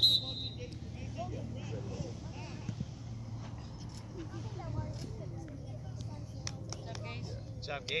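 Faint voices of players and spectators calling across a soccer field, over a steady low hum. A short, shrill whistle sounds right at the start.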